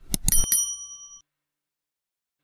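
Subscribe-button sound effect: a few quick mouse clicks, then a bright bell ding that rings for about a second and fades out.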